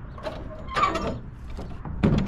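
The rear barn door of an enclosed cargo trailer being swung shut, its metal latch and hinge hardware clicking and rattling in a few short clusters, loudest about a second in.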